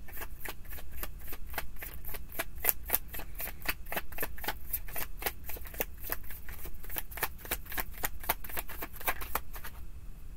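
A tarot deck being shuffled by hand: a steady run of quick, crisp card clicks, several a second.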